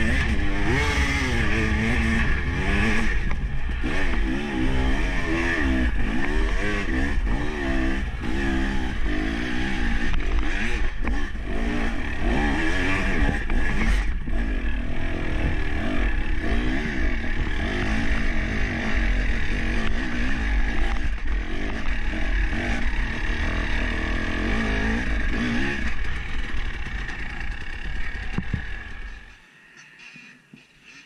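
Enduro dirt bike engine working hard up a steep climb, revving up and falling back again and again as the throttle is worked. The sound drops away abruptly about a second before the end.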